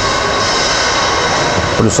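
Engine oil pouring from a plastic jug through a funnel into the filler neck: a steady rushing pour that stops near the end as the jug is tipped back.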